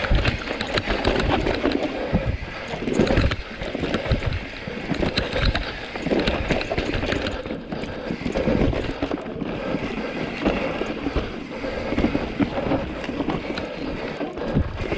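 Mountain bike riding fast down a dirt forest trail: tyres rolling over dirt and roots, with the bike clattering and knocking over the bumps.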